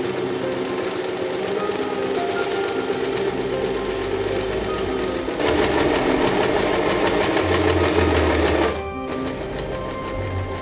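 Domestic electric sewing machine stitching a zip into a fabric cushion panel. It runs steadily, then faster and louder from about halfway through, and stops shortly before the end.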